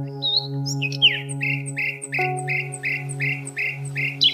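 A songbird singing a rapid run of repeated downward-slurred notes, about two or three a second, over a sustained ambient meditation-music drone whose chord changes about halfway through.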